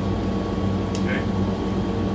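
Steady low mechanical hum inside a city transit bus, with a brief spoken "okay" about halfway through.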